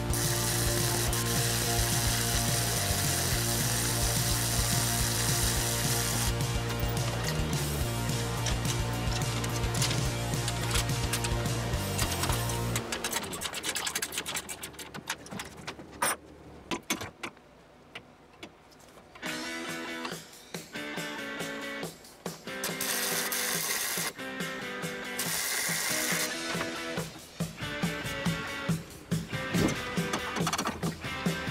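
Background music throughout. For about the first 13 seconds a wire-feed welder crackles steadily underneath it, welding steel frame tubing in the cold. After that the music carries on with a few sharp clicks.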